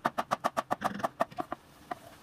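A chef's knife chopping a jalapeño on a wooden cutting board: quick, even chops about eight a second that stop about one and a half seconds in.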